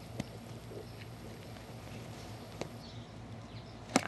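A few faint, scattered clicks and taps of a small metal nitro RC engine starter back plate being handled, with a sharper click near the end.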